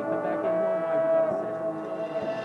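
Marching band's brass section holding a long sustained chord, one strong note steady through most of the stretch, with the front ensemble's mallets and percussion underneath.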